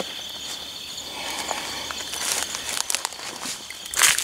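Footsteps pushing through dry brush, with twigs and leaves crackling and brushing against the legs. A steady high insect drone sounds in the background and fades out about halfway through.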